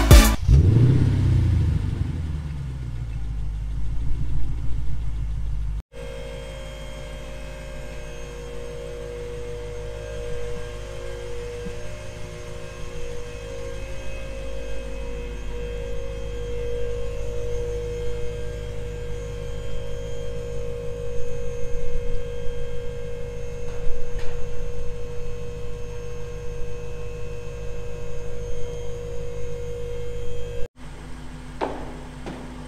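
Lexus GS F's 5.0-litre V8 idling through an aftermarket cat-back exhaust: a steady low rumble, with a steady hum alongside it. In the first few seconds, before a cut, a louder sound falls away.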